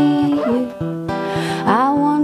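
Acoustic guitar strummed under a woman's wordless sung vocal line, her voice sliding upward in pitch near the end.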